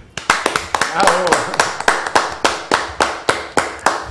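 A small group of people clapping steadily, about five claps a second, with voices underneath.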